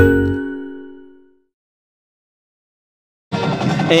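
The last chord of a TV station-ID jingle rings out as several sustained tones, fading away over about a second and a half. Dead silence follows for about two seconds, and then a man's voice and stadium sound cut in near the end.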